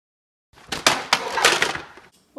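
A loud crash: a sudden dense clatter of many impacts that starts about half a second in and lasts about a second and a half.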